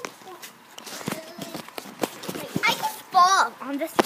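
Children's voices on a swinging hammock: soft fragments, then a loud, high, wavering squeal about three seconds in, over scattered clicks and knocks of the camera being handled.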